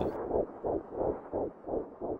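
Fast, muffled heartbeat, about four pulses a second.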